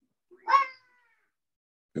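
A cat meowing once, briefly, about half a second in.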